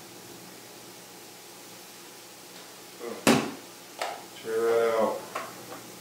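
Quiet room tone, then a sharp clack about three seconds in and a lighter knock a second later as containers are handled on a kitchen counter, followed by a brief bit of a man's voice and one more small click.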